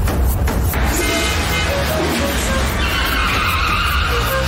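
Dramatic background music over the sound of a car arriving, with a tyre screech as it brakes in the last second or so.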